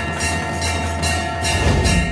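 Background devotional music: a sustained drone chord with a light, regular percussive beat, and a low swell near the end.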